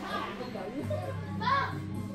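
Chatter of adults and children talking over one another, with background music underneath; one voice stands out louder about one and a half seconds in.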